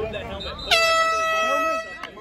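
An air horn sounds one steady blast of about a second, starting and stopping sharply, over background voices.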